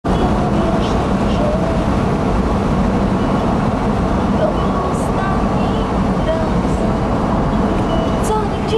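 Steady road and wind noise of a vehicle travelling at highway speed, with a low steady hum underneath.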